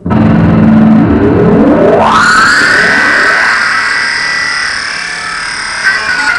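Distorted electric guitar starts suddenly with a low held note, then glides smoothly up in pitch over about a second and a half to a high sustained note, which holds until a new note comes in near the end.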